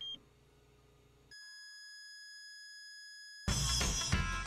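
Hospital heart monitor beeping once, then, a little over a second later, holding a steady unbroken flatline tone for about two seconds: the patient's heart has stopped. Guitar music starts near the end.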